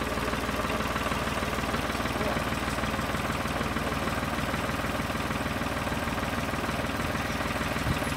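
Farm tractor's diesel engine idling steadily, freshly started.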